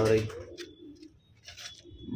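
Domestic pigeons cooing faintly in a loft, just after a man's single spoken word.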